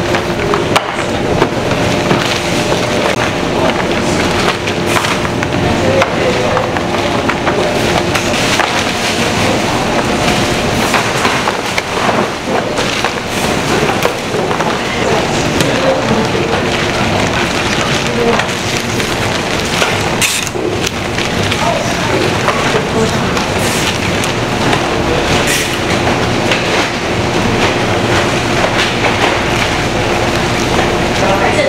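Steady food-factory production-line noise: conveyor machinery running with a faint steady hum, plus scattered clicks and rattles.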